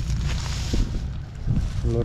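The 90 hp Mangkorn Thong (Golden Dragon) diesel engine of an E-taen farm truck idling with a steady low rumble, with wind buffeting the microphone.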